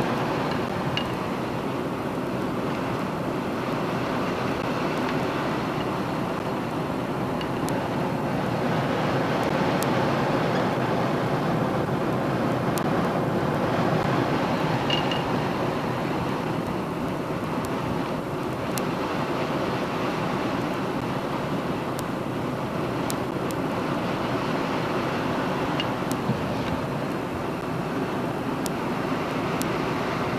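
Steady rumble of a vehicle driving slowly, an even noise of road and engine with no break, and a few faint clicks scattered through it.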